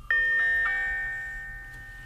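A chime: three bell-like notes struck in quick succession within the first second, building into a chord that rings on and slowly fades.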